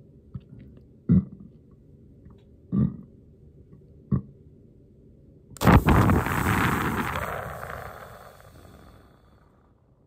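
A woman's burps held in puffed-out cheeks: three short muffled bursts about a second and a half apart, then near six seconds in a loud burp. It turns into a long breathy blow of air out through pursed lips into the microphone, fading away over about three seconds.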